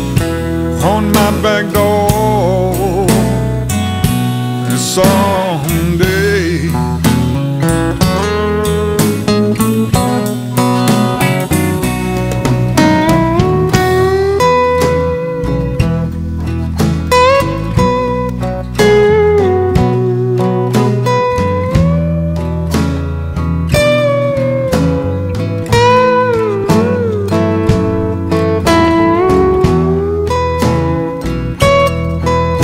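Live blues band playing an instrumental break, led by a lap steel guitar soloing with sliding notes over electric bass, drums and acoustic guitar.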